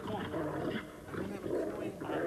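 People's voices making vocal sounds that carry no clear words.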